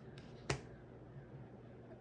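One sharp snap of a tarot card being pulled from the deck and laid down, about half a second in, with a fainter tap just before it.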